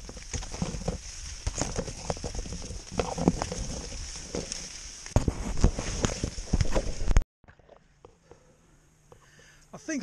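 Maize stalks and leaves rustling, crackling and snapping as someone forces a way through a tall corn field, with sharp knocks where leaves brush the camera. It cuts off abruptly about seven seconds in, leaving near silence.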